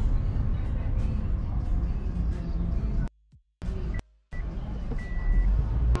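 Low, steady road and engine rumble inside a moving car's cabin, cut off abruptly twice near the middle by short silent gaps.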